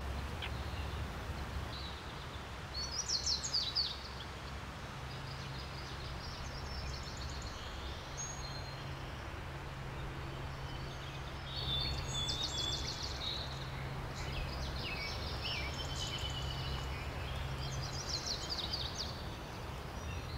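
Forest ambience: several short spells of birds chirping and singing over a steady low rumble.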